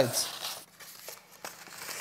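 Faint crinkling and rustling of paper cards being handled in the hands, with a few light ticks.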